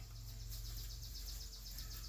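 Faint, rapid, high-pitched trill of evenly spaced chirps from a small animal, over a low steady hum.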